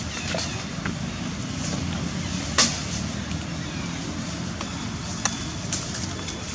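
Steady low outdoor background rumble, with a few short sharp clicks; the loudest click comes about two and a half seconds in.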